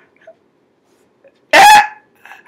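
A woman's brief, very loud, high-pitched shriek about one and a half seconds in.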